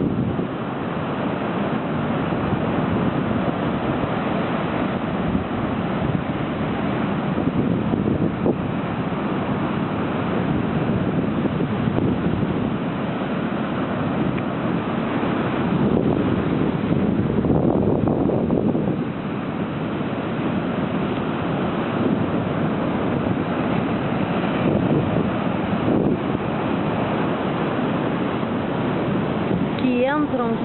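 Atlantic surf breaking over shoreline rocks, a continuous rushing wash that swells and ebbs, loudest in one surge a little past the middle, with wind buffeting the microphone.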